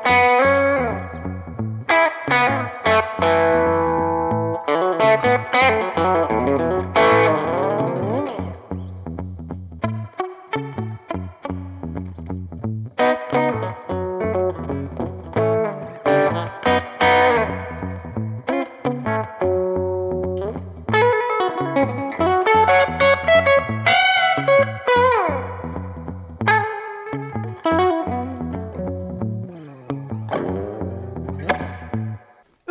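Electric guitar with Hot Rail pickups, a butterscotch Telecaster-style body, played through an amp with effects. It plays a run of chords and lead lines with several string bends, in a twangy, Telecaster-like tone.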